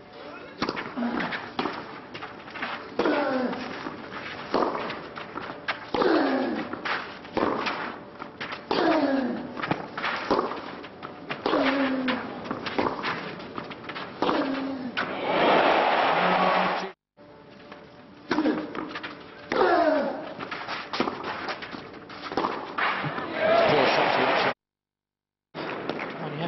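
Tennis rally on a clay court: racket strings striking the ball again and again, with a player's falling-pitch grunt on the shots about every one and a half seconds. A brief swell of crowd noise comes about two thirds of the way through, and the sound cuts out twice for a moment.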